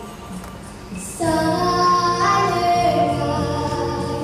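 A girl singing solo into a microphone over instrumental accompaniment; after a short lull she comes in about a second in with long held notes that waver in pitch.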